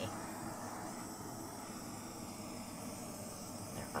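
Hand-held butane torch burning with a steady hiss as its flame is passed over wet acrylic paint.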